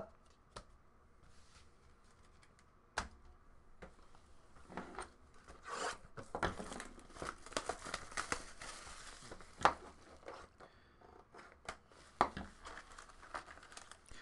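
A sealed hobby box of Upper Deck Goodwin Champions trading card packs being torn open by hand: its wrapping and cardboard tearing and crinkling. A few sharp clicks come first, then denser crackly tearing in the middle, easing off near the end.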